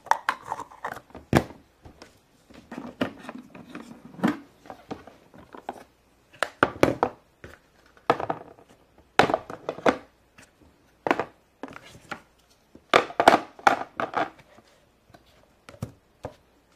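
Plastic play dough molds and tools being packed into a plastic carry case: an irregular run of clicks, knocks and rattles, with louder clusters about seven, nine and thirteen seconds in.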